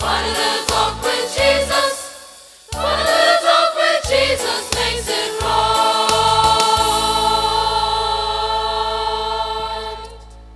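Choir singing a hymn with instrumental accompaniment and steady bass notes; about halfway through the last phrase is held as one long chord that fades out near the end.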